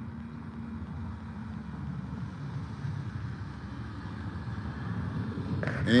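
Steady low rumble of a motor vehicle, growing slightly louder toward the end.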